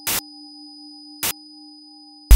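Horror-film sound design: a steady eerie drone of a few held tones, broken twice by short sharp bursts of noise, once at the start and again about a second and a quarter in.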